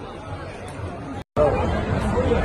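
Chatter of a small group of people talking at once, with no single voice standing out. A little over a second in the sound drops out briefly at an edit, then comes back louder.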